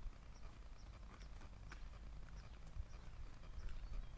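Faint footsteps on a dirt yard, a few light irregular steps, over wind rumbling on the microphone. Short high chirps, like a small bird, repeat about twice a second in the background.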